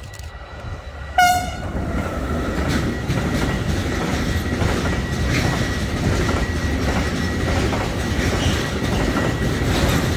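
An electric freight locomotive gives one short horn blast about a second in as it passes. Then comes the steady rumble of a long intermodal freight train of wagons carrying semi-trailers, with the regular clickety-clack of wheels over the rail joints.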